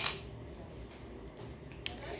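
Two short sharp clicks, one at the start and one near the end, from handling the light pad's charging cable, with low room noise between.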